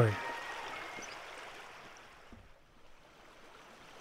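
River water burbling over stones, fading down to near quiet about halfway through and rising slightly again near the end.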